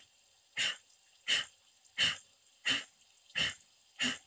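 Kapalabhati breathing: a steady series of short, forceful exhales through the nose, about three every two seconds, each a brief sharp puff driven by pumping the belly, with quiet passive inhales between.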